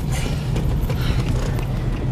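Inside a moving car on a rain-wet road: a steady low rumble of engine and tyres with a hiss of water spray from the wet road.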